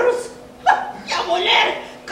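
A person's wordless vocal cries in two outbursts, the second longer, with no words in them.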